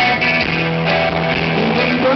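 Live rock band playing an instrumental passage, electric guitars to the fore over bass, with held chords and notes and no singing.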